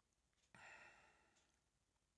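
A single faint sigh: a breath let out that starts suddenly about half a second in and fades away over about a second.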